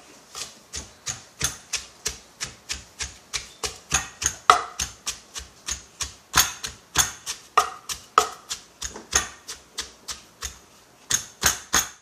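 Pestle pounding lemongrass, shallots and chillies to a paste in a large Lao mortar (khok and sak): a steady rhythm of knocks, about three a second, some strokes harder than others.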